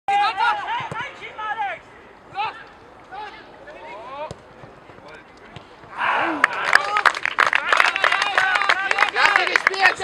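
Voices of players and spectators calling out across a football pitch: a few separate shouts at first, then from about six seconds in many voices calling at once and overlapping, with short sharp clicks among them.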